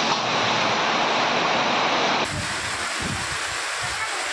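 Storm wind and rain: a dense, steady hiss, then after a sudden cut about two seconds in, gusting wind that buffets the microphone with irregular low thumps.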